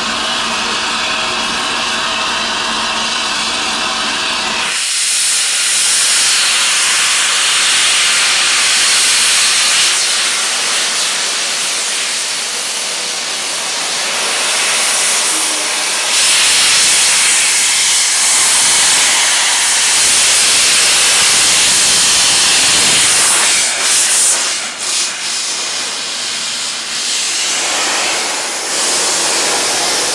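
Steam locomotive Flying Scotsman (LNER A3 Pacific) with steam escaping in a loud, steady hiss that starts suddenly about five seconds in and dips briefly near the twenty-five-second mark. Before the hiss there is a steady droning hum.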